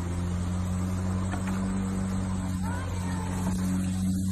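A steady low mechanical hum, engine-like, holding one pitch throughout, with a faint short rising squeak about two and a half seconds in.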